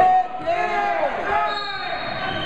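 Several voices shouting and calling out in an echoing gymnasium during a youth wrestling bout, with dull thuds of the wrestlers on the mat.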